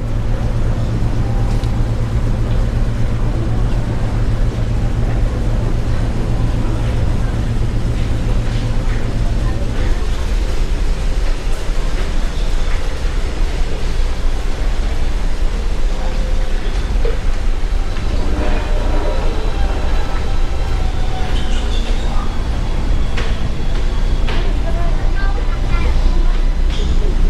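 Car ferry's engines running on board in a steady low drone.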